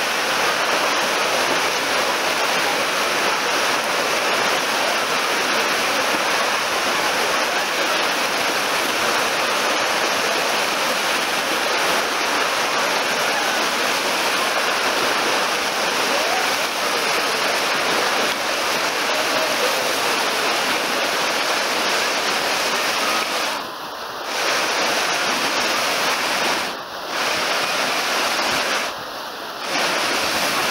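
Artificial wave pool's machine-made waves breaking and churning, a steady loud rush of splashing water. The sound drops off briefly three times near the end.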